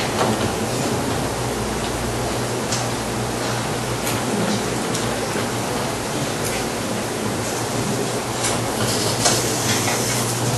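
Steady hiss with a low hum underneath, broken by scattered short clicks and scratches, a few stronger ones near the end.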